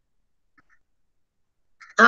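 Near silence, broken by two faint short ticks about half a second in; a woman's voice starts again at the very end.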